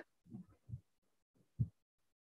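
Near silence broken by three short, faint low thumps, the last one about one and a half seconds in the loudest.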